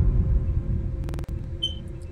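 Horror film sound design: a low rumbling drone that slowly fades, with a brief burst of rapid clicks about a second in.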